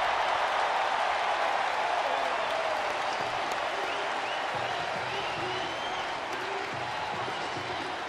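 Ballpark crowd cheering and applauding a triple by the home team's batter, slowly dying down.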